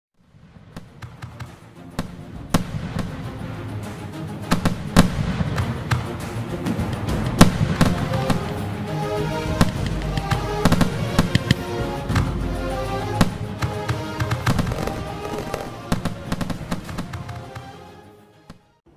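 Fireworks going off, a rapid series of sharp bangs and crackles, over background music. The bangs build up over the first couple of seconds and fade out near the end.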